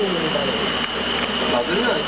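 Men's voices talking, indistinct and in a room, with a steady high-pitched tone underneath.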